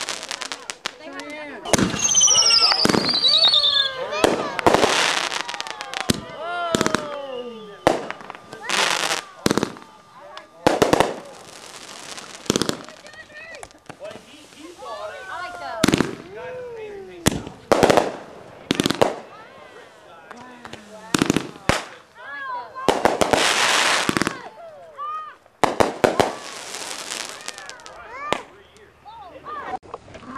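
Consumer fireworks going off: a string of sharp bangs and crackles with several long hissing bursts, and a whistle that falls in pitch about two to four seconds in. People's voices call out between the bangs.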